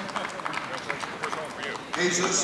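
Indistinct voices in a seated audience, with scattered hand clapping, several claps a second.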